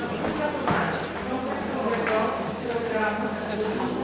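Indistinct speech echoing in a large hall, with a background murmur of other voices in the room and one short knock less than a second in.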